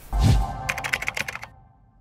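Short outro sound logo: a low swell, then a quick run of keyboard-typing clicks over a held tone, fading out.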